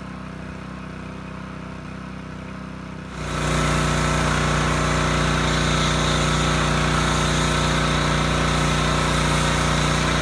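Gas-powered pressure washer running steadily; about three seconds in the trigger is opened and it runs much louder with a low tone, joined by a steady hiss as the MTM PF22 foam cannon sprays thick foam at around 3100 PSI.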